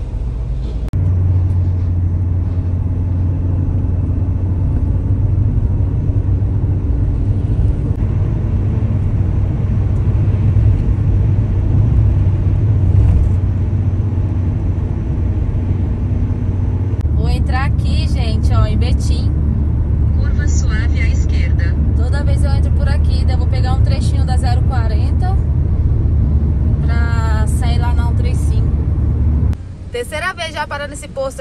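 Steady low rumble of a car driving on a highway, heard from inside the cabin: tyre and engine noise. It changes slightly about a second in and again about halfway through.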